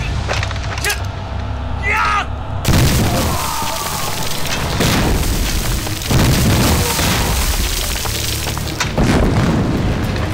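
Staged battle explosions: several loud booms a few seconds apart over a continuous low rumble, with a shout about two seconds in.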